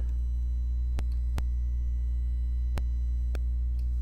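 Steady low electrical hum, with a few faint clicks scattered through it.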